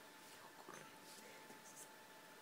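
Near silence: faint, short paper rustles, as of sheet music being handled at a music stand, over a faint steady hum.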